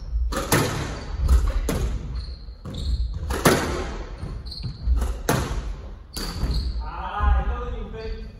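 A squash rally: the ball cracks off the rackets and the walls roughly once a second, each hit echoing in the court. Between the hits, shoes squeak on the wooden floor and footsteps thud.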